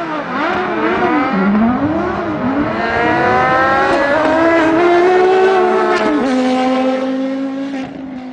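Porsche Carrera GT, Lotus Exige and Porsche 996 GT3 sports-car engines at full throttle in a side-by-side race, several engine notes climbing in pitch through the gears. There is a sharp drop at a gear change about six seconds in, and the sound fades near the end as the cars pull away.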